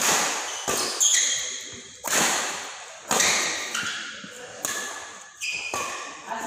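Badminton rackets striking the shuttlecock in a fast doubles rally, a sharp smack about once a second, each echoing in the hall. Short high squeaks, typical of court shoes, come between some of the hits.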